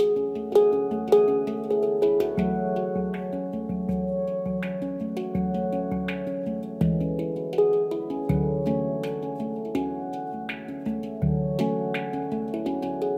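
Ayasa handpan in F#3 Low Pygmy tuning played with the fingertips: a flowing melody of struck, ringing metal notes, with deeper low notes sounding about four times.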